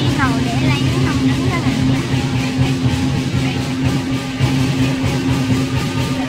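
Lion dance percussion playing steadily: drum and cymbals struck in fast, even strokes over a sustained low tone, together with the noise of a large crowd.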